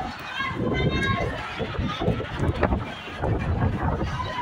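Crowd chatter: many people talking at once, no single voice standing out, with scattered small knocks and clicks.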